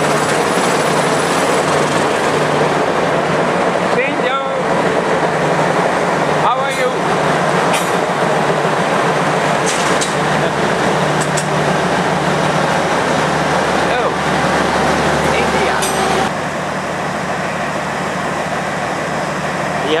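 D13E diesel locomotive running with a loud, steady engine drone and low hum, with people's voices over it. The sound drops a little about sixteen seconds in.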